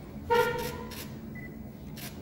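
A short, loud horn honk about a third of a second in, fading out over about a second, over low room noise.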